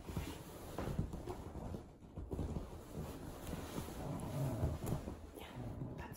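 Rustling and irregular low bumps from a small curly-coated dog scrambling over a person on a sofa, with the phone's microphone jostled.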